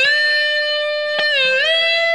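Electric guitar, a Stratocaster-style, playing one lead note picked sharply and held. About one and a half seconds in, its pitch dips slightly and is then bent up to a higher note that rings on.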